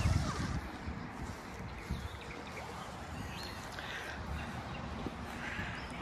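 Soft footsteps walking across a grass lawn over a low, steady outdoor background noise, with a few dull thumps at the start and one about two seconds in.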